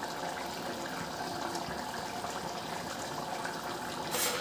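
Mutton curry boiling in an open pressure cooker on the stove: a steady watery hiss.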